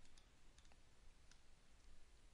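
Near silence: faint room hiss with a few soft clicks of a computer mouse in the first second and a half.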